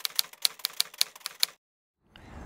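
Typewriter keys clacking at an even pace, about six to seven strokes a second, as a typing sound effect. The strokes stop about one and a half seconds in.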